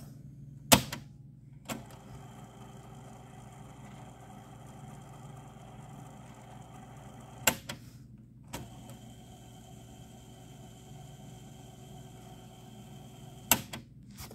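Technics RS-D180W cassette deck's transport: loud clicks as its buttons are pressed, each followed by a steady whirr as the tape in Deck B fast-winds. This happens twice, and each wind stops with a click, at about seven and at about thirteen seconds in.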